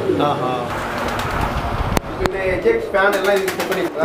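Fantail pigeons cooing in a loft, with two sharp clicks about two seconds in.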